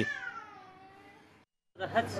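A young child's crying wail, one falling cry that fades away over about a second and a half, then cuts off abruptly.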